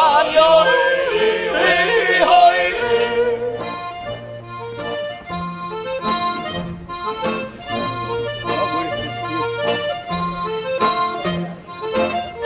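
Male voices singing in close harmony with yodel-like turns, ending about three seconds in. Then an accordion plays an instrumental interlude of held chords with alternating bass notes, over strummed acoustic guitar.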